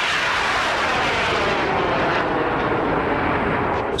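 Rocket motor burning in flight: a steady, loud rushing noise with a sweeping, phasing quality that slides down in pitch as the rocket climbs away. It cuts off abruptly at the end.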